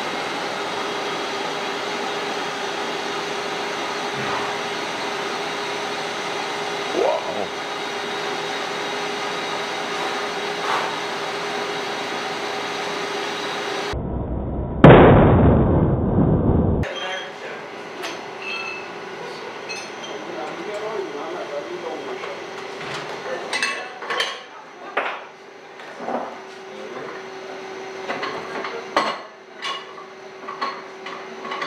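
Tensile testing machine running with a steady hum as it pulls a steel reinforcing bar in tension; about 15 seconds in the bar fails at its breaking point with a very loud bang that rings and dies away over a couple of seconds. Afterwards the hum carries on, with scattered metallic clinks and knocks of steel bar being handled.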